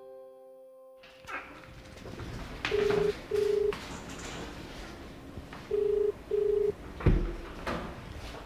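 Telephone ringing tone: steady low beeps in pairs, two pairs about three seconds apart. A single thump near the end.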